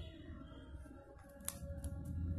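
Faint handling sounds of a tea-light candle being worked in and out of the base of a crocheted doll, with small clicks and one sharper click about one and a half seconds in.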